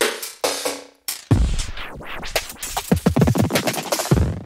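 Electronic drum loop played through a short feedback delay whose delay time is being turned, so the delay's ringing tone slides up and down in pitch over the drum hits. The sound cuts out briefly about a second in.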